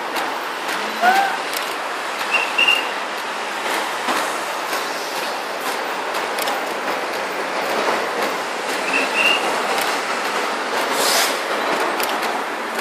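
City road traffic passing below: the steady noise of buses and cars. A few short, high double chirps cut through it, and there is a brief hiss near the end.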